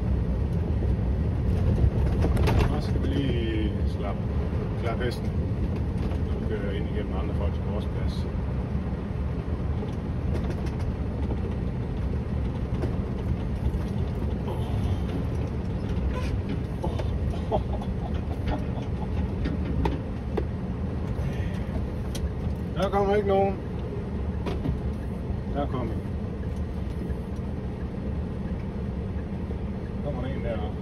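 Scania V8 truck engine running steadily under light load as the truck drives slowly, heard from inside the cab with a low rumble of the drive. A few brief higher pitched sounds come through about two seconds in and again later on.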